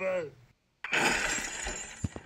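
A voice trailing off at the start, then about a second in a sudden crash of breaking glass that fades out over the next second.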